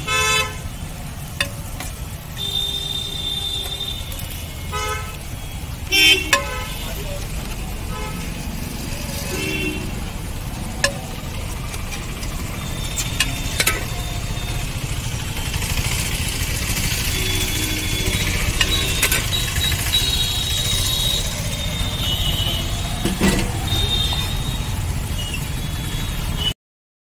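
Street traffic with a steady low rumble and short vehicle horn toots every few seconds, mixed with occasional clicks and scrapes of a metal spatula on the iron dosa griddle.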